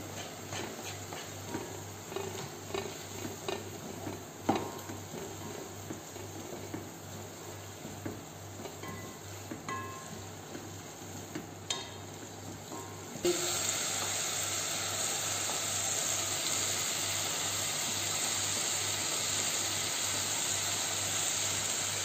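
Vegetables stir-frying in a pot: a wooden spatula scraping and tapping against the pot over a light sizzle. About thirteen seconds in, this gives way suddenly to a louder, steady sizzle.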